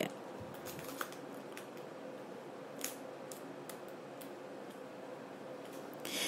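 Quiet steady background hiss with a faint hum, broken by a few faint, sharp clicks, the clearest about a second in and near the three-second mark.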